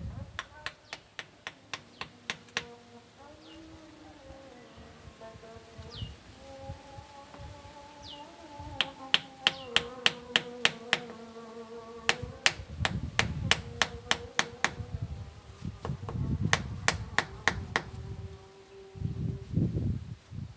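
Small hand hammer tapping in quick runs of sharp strikes, about five a second, while a knife handle and its fitting are hammered into place. The runs stop and start several times, with some heavier blows in the second half.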